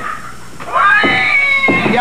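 A high-pitched, cat-like wail about a second long, rising in pitch and then held, starting partway through.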